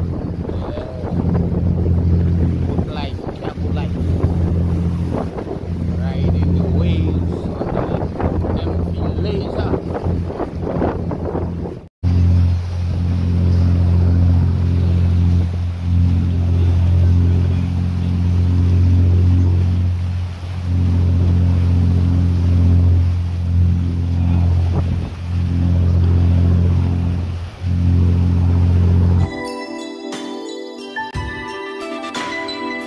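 A motor vessel's engine running with a steady low drone, over the rush of the bow wave and wind buffeting the microphone. Music with jingles comes in near the end.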